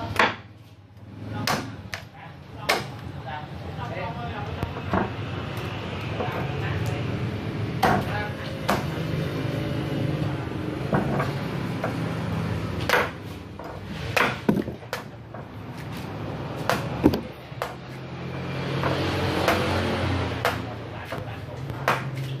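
Kershaw Camp 12 machete chopping into the husk of green coconuts on a wooden block: about a dozen sharp thwacks spaced irregularly, a second to a few seconds apart, over background voices.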